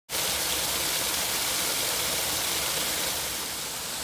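Overflow water from a full reservoir gushing out of two outlets in a stone dam wall and splashing onto a concrete channel below: a steady rushing splash, a little fainter near the end.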